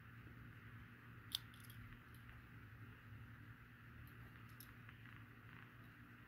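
Near silence with a steady low room hum, broken by one small sharp click about a second in and a few fainter ticks from a die-cast model pickup being handled in the fingers, its little opening hood being shut.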